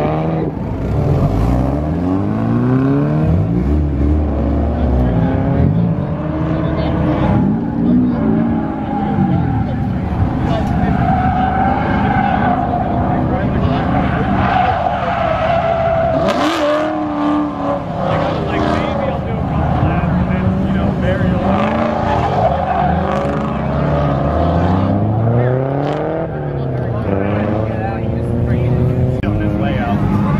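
A Ford Mustang drifting: its engine revs rise and fall again and again as the throttle is worked, over the squeal of tyres sliding on the asphalt.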